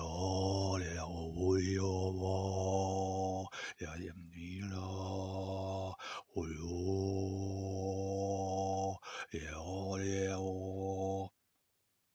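Male overtone singing: a low drone held on one pitch in four long breaths, with a high overtone bending up and down above it. It stops shortly before the end.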